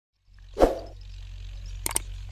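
One sharp pop about half a second in, then a low steady hum with two quick clicks near the end: the sound effects of a subscribe-button animation, the button popping up and a mouse cursor clicking it.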